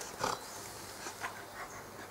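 A large dog snuffling briefly through its nose about a quarter of a second in, then only faint low sounds.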